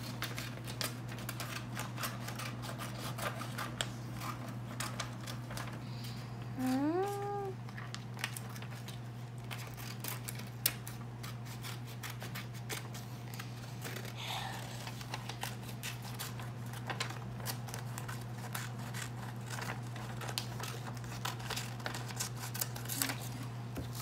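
Small scissors cutting paper: many quick, uneven snips one after another, over a steady low hum.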